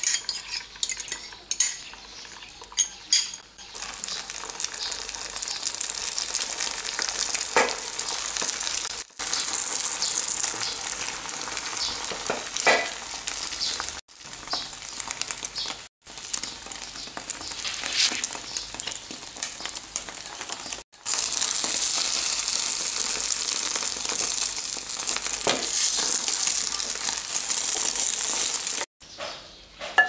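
A spoon clinks and scrapes against a china bowl as beaten eggs are tipped into a hot non-stick frying pan, and the egg then sizzles steadily as it fries. The sizzle breaks off suddenly several times, and a utensil scrapes the pan now and then.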